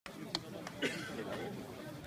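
Indistinct chatter of people talking near the pitch, with a few short faint clicks in the first second.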